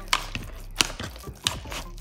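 Wire potato masher working cooked red potatoes in a mixing bowl: a few sharp, irregular knocks of the masher against the bowl, the loudest about one and a half seconds in.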